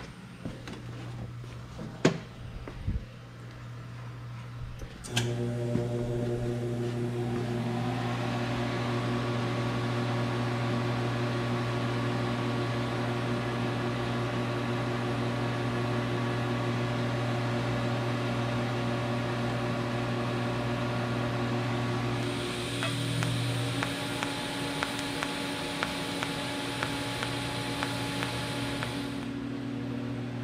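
A Miller Dynasty 350 TIG welder switches on with a click about five seconds in. Its cooling fan and electrical hum then run steadily. Near the end, a higher hiss with a thin high whine joins for about seven seconds and then stops.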